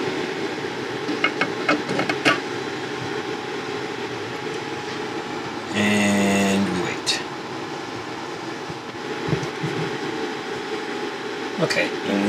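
Steady mechanical hum from a fan or ventilation, with a few sharp clicks in the first couple of seconds. A loud, steady buzzing tone lasting about a second sounds just before the middle.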